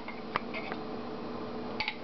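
A spoon clinking against a glass salsa jar as salsa is scooped out and dropped into a frying pan of beans: a few light clicks, with a faint steady hum underneath.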